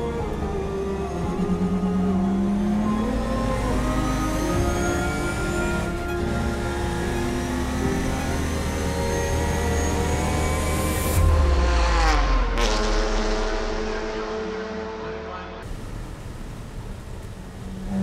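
Classic race car engine heard from inside the cockpit, revving higher and higher in pitch down a straight. About eleven seconds in the pitch drops sharply as the car brakes and changes down, with two sharp cracks. It runs quieter near the end.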